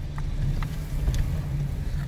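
Steady low rumble of a car heard from inside its cabin, engine and road noise, with a few faint clicks.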